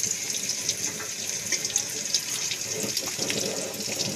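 Onions frying in a pot over a wood fire, browning: a steady sizzling hiss dotted with small crackles.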